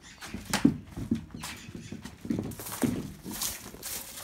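Irregular footsteps and knocks, roughly two a second, as someone walks across paving with a phone in hand.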